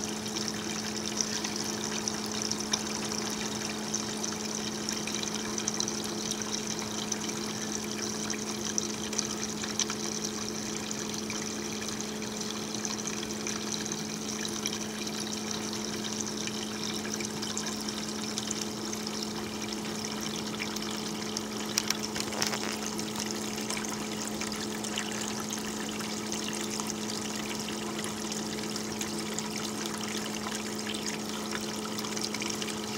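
Steady low electric hum with water trickling: the small pump and hoses circulating cooling water through a distillation condenser. One short knock about two-thirds of the way through.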